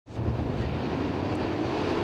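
A pack of winged 410 sprint cars running together on a dirt oval, heard as a steady, blended engine drone that fades in at the very start. The engines are 410-cubic-inch V8s.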